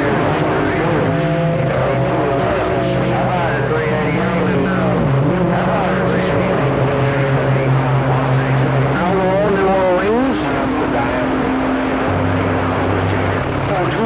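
CB radio receiving skip (long-distance DX) on channel 28: several distant stations overlap into a garbled, warbling jumble of voices, over steady droning hums and whistles where their signals beat against each other. The pitch of the steady tones shifts a few times, with a new low hum coming in near the end.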